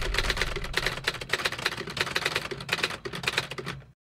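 Typing sound effect: a fast, uneven run of key clicks that cuts off suddenly near the end.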